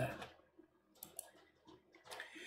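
Two faint, short computer mouse clicks about a second in, with a fainter click near the end, against near silence.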